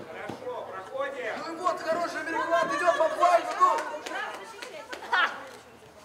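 Several voices chattering and calling out over one another, loudest in the middle, with a few short sharp knocks and a brief loud call a little after five seconds.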